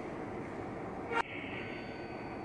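Steady, quiet room tone: a low even hiss of background noise, broken by a single brief click just past a second in.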